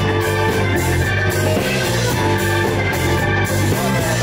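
A live blues-rock band playing an instrumental stretch: electric guitar over bass guitar and drum kit, with a repeating bass line.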